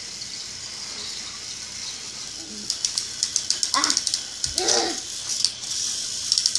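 Plastic Thomas toy trains and track clicking and rattling in quick irregular clusters as they are handled, starting about halfway through, with two brief vocal sounds among them.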